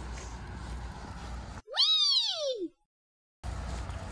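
An edited-in sound effect: one loud call, about a second long, that rises and then falls in pitch, with the outdoor background cut to dead silence around it. Before it, outdoor noise with a low wind-like rumble.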